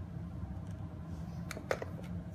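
Light handling clicks from a plastic climbing helmet with clip-on earmuff headset being turned over in the hands, with two short sharp clicks near the end, over a steady low room hum.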